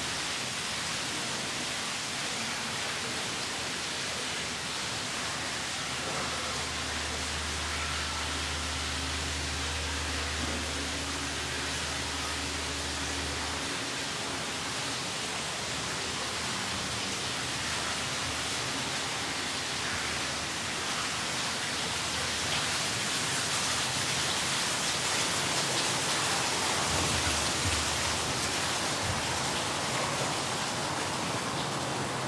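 Water from a wall fountain spilling down a stone wall into a pool, making a steady hiss. A low hum joins it for several seconds in the first half, and the hiss grows a little louder near the end.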